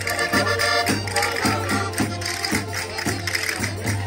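Live Portuguese rusga folk music: accordions played through a PA with a steady beat of about two a second, with hand clapping.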